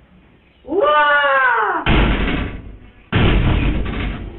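A woman's long, drawn-out exclamation of surprise, about a second long: its pitch jumps up, then slides slowly down. Two loud, rough noise bursts follow. All of it comes through a security camera's thin microphone.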